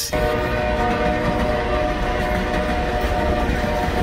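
Train horn sounding one long, steady blast over the low rumble of the train running.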